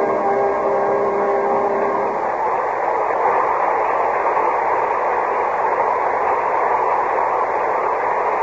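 Studio audience applauding at the end of an act, steady throughout, with the last held chord of the orchestra's closing music fading out under it in the first two seconds.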